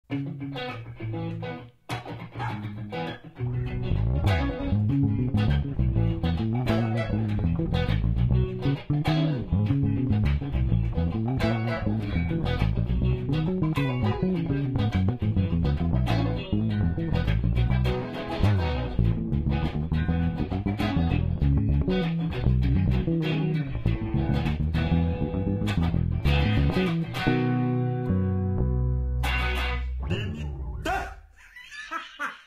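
Electric bass and a Strat-style electric guitar playing a groove together. The bass comes in fully a few seconds in and the piece ends on a held low note.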